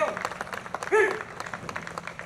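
Audience applauding with steady clapping, and one short call from a voice about a second in.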